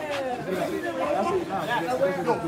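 Indistinct chatter from several people talking at once in the background, with no single close voice.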